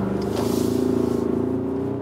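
Ford Ranger Raptor's 2.0-litre bi-turbo four-cylinder diesel accelerating hard, though not at full throttle, heard from inside the cabin. It is a steady engine drone that climbs slightly in pitch.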